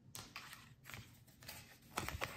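Tarot cards being handled on a wooden table: a card is slid and picked up, giving a run of soft, quick clicks and brushes, the sharpest near the end.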